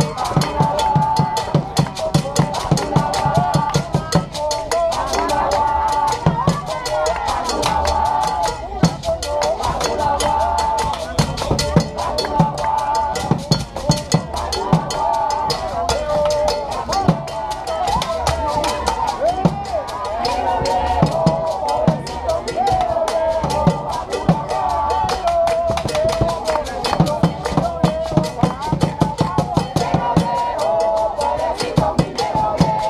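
Live Cuban rumba: hand drums play a busy, continuous rhythm with repeated deep low strokes, under voices singing.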